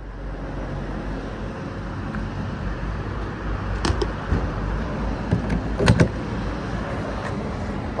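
Steady car and traffic noise, with a few sharp clicks and knocks around the middle; the loudest pair comes about six seconds in.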